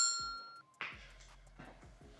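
A bright, bell-like notification ding, a subscribe-button sound effect, that strikes once and fades within about half a second, followed by faint room tone.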